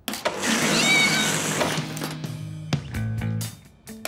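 Cartoon sound effect of a soft-serve ice cream machine whirring and gushing once its lever is pulled, a loud noisy rush that cuts off with a click near three seconds in, over background music.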